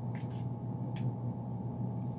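A steady low background hum with a few faint, short clicks.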